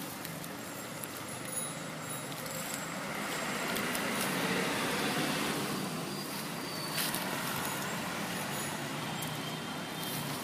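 Road traffic going by, its noise swelling through the middle as a vehicle passes and then easing off, with a brief click about seven seconds in.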